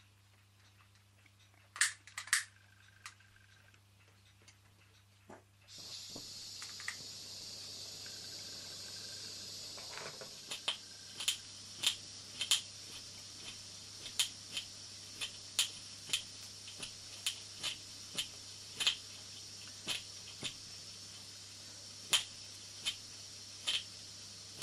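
A couple of sharp lighter clicks, then a small gas burner under a Philcraft toy marine steam engine's boiler starts to hiss steadily. From about ten seconds on, sharp clicks come roughly every two-thirds of a second over the hiss as the little engine is turned over by hand but does not yet run.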